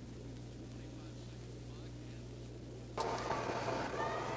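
Low, steady electrical hum from an old recording under faint background noise. About three seconds in, the background noise steps up and becomes brighter, with a faint click or two.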